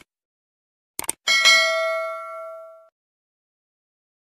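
Subscribe-button animation sound effect: a quick double click about a second in, then a notification bell ding with several tones that rings and fades out over about a second and a half.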